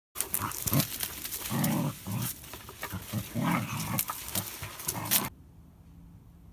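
Dachshund growling in short, irregular bursts while playing with a basketball, with a few clicks and knocks from its mouth on the ball. The sounds stop about five seconds in.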